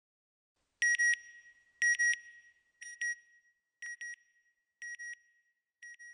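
Electronic beeps in pairs, about one pair a second, on a high tone, each pair quieter than the last: the sound logo of the closing NASA Goddard ident.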